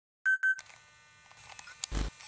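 Two short, high electronic beeps in quick succession, followed by a faint hum and a low thump near the end.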